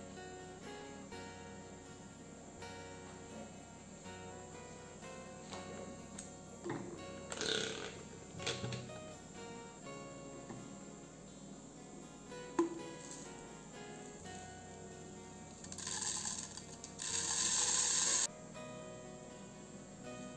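Soft background music with guitar throughout, with a few light handling knocks. Near the end comes about two seconds of dry raw rice being poured into a plastic blender jar, the loudest sound here.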